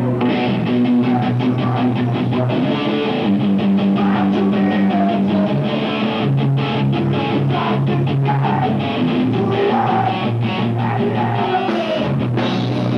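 A live punk rock band playing loud: distorted electric guitars holding chords over a steadily beating drum kit.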